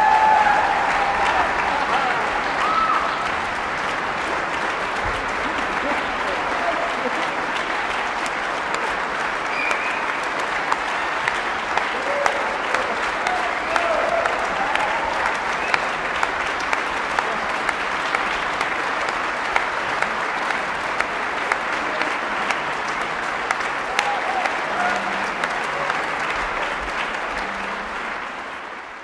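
Concert hall audience applauding steadily. In the second half the clapping falls into a slow beat, about one clap a second.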